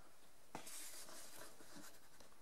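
Faint rustle of plastic VHS tape cases being handled and shifted in the hands, with one light click about half a second in.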